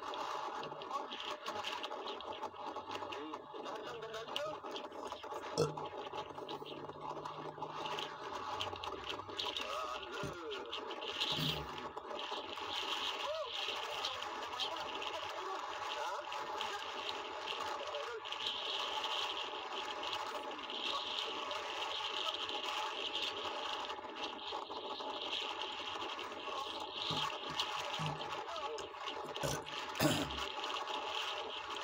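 Indistinct, muffled voices over a steady bed of background noise.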